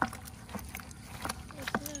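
A mesh net being shaken out over a plastic bucket of small live field fish: a few scattered short knocks and rustles.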